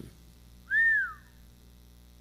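A single short whistled note about a second in, lasting about half a second, rising slightly then gliding down in pitch, over a faint steady electrical hum.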